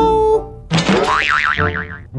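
Cartoon "boing" sound effect: a springy tone whose pitch wobbles rapidly up and down, starting suddenly about two-thirds of a second in and fading away.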